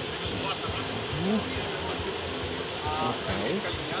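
Steady outdoor background noise with faint, scattered voices in the distance, and a brief snatch of a voice near the end.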